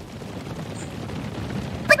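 A pack of cartoon ponies galloping: a dense, steady clatter and rumble of many hooves running together.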